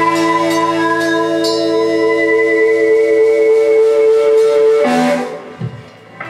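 Live rock band holding a long, steady electric-guitar chord that rings on unchanged, then cuts off about five seconds in, leaving a brief lull as the song ends.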